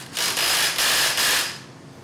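Hand-held cordless power tool run in one burst of about a second and a half at the fasteners of a centrifugal supercharger's drive pulley, a mostly high-pitched, hissing whir with a slight pulse.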